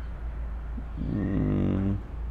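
A low, drawn-out voiced hum, steady in pitch, begins about halfway in, lasts about a second and cuts off sharply. A faint steady low hum runs beneath it.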